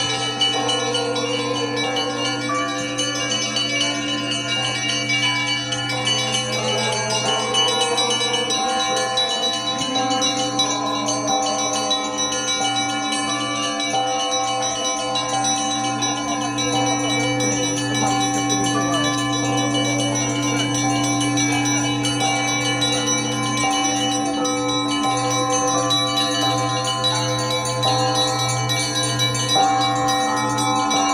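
Church bells ringing continuously, several bells sounding together in a peal, their overlapping tones re-struck and ringing on.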